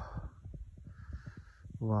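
A man's drawn-out exclamation "waah", falling in pitch, begins near the end. Irregular low buffeting, typical of wind on the microphone, fills the gap before it.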